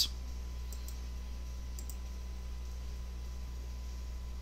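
A few faint computer mouse clicks, in two small groups about a second apart, over a steady low hum.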